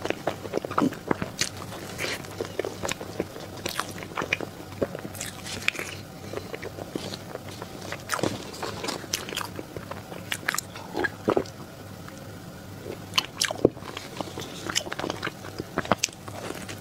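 Close-miked eating sounds: biting into and chewing a soft cream-filled cake, with many wet mouth clicks and smacks.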